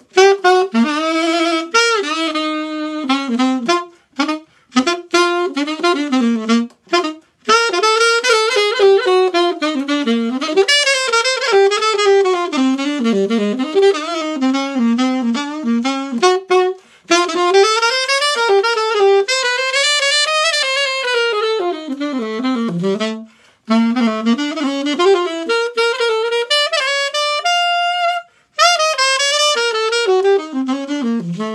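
Conn 6M-era alto saxophone played solo: quick, flowing jazz runs and phrases across its range, broken by short pauses and a few short detached notes, with one long held note near the end.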